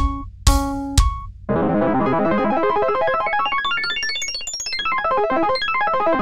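Chiptune-style synthesized music with square-wave leads, a bass line and drums playing back from a composition app. It opens with three strong chord hits, each with a drum thud, half a second apart, then about a second and a half in breaks into a fast flurry of notes that climbs high and falls back.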